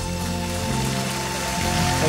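Audience applause breaking out over the band's last held chord as the song ends.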